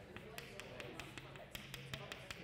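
Chalk tapping against a blackboard in quick short strokes, about five or six sharp clicks a second, as a row of hatch marks is drawn along a line.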